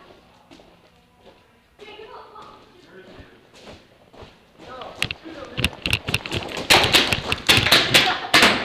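Paintball markers firing: a rapid, irregular string of sharp shots starts about five seconds in and grows louder and denser towards the end, an exchange of fire at close range.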